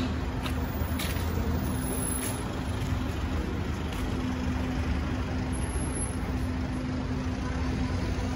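City street traffic: a steady low rumble of cars on the road, with a constant low hum running under it.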